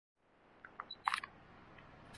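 A few short clicks, then a quick cluster of sharp clicks about a second in, followed by a faint steady background.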